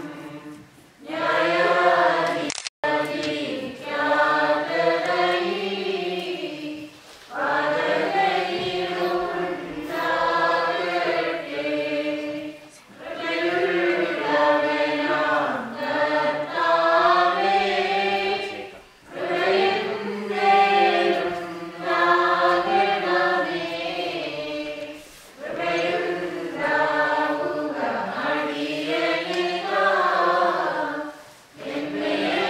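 A choir singing a liturgical hymn of the Holy Qurbono in long phrases of about six seconds, with short pauses between them.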